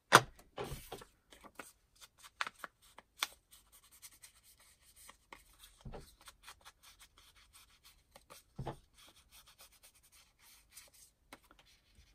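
Foam ink-blending tool tapped onto a Distress ink pad and rubbed around the edges of a paper medallion: short scratchy rubs and light taps, with a louder knock right at the start.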